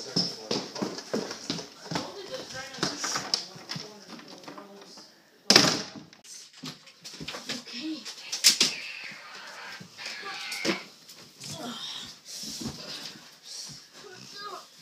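Indistinct voices, with two sharp knocks about five and a half and eight and a half seconds in.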